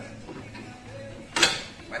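A single sharp metallic clank about one and a half seconds in, from a brake disc being handled onto a car's front wheel hub, with faint music in the background.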